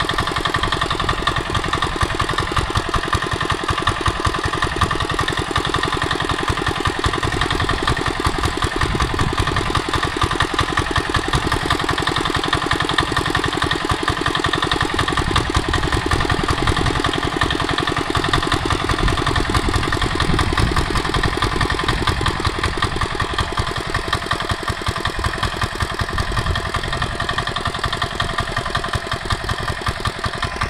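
Mini tractor engine running steadily at an even speed, loud and unchanging.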